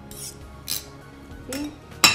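Table knife clinking and scraping against a glass bowl while mixing a soft cheese filling: two short clinks, the second and louder one under a second in.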